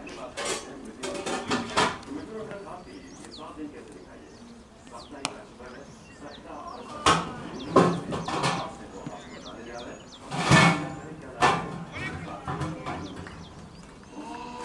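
Cricket players shouting on the field, with one sharp crack of bat on ball about five seconds in. Birds chirp faintly in the background.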